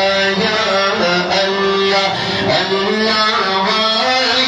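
A man's voice singing a Pashto naat unaccompanied into a microphone, holding long notes that glide slowly up and down.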